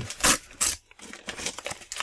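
Foil wrapper of a Panini Euro 2016 sticker pack being torn open by hand: crinkling and ripping, with two louder rips in the first second and softer rustling after.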